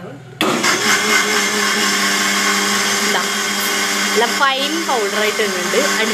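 Electric blender with a stainless steel jar switched on about half a second in, running steadily at full speed as it blends milk and Oreo biscuits into a shake.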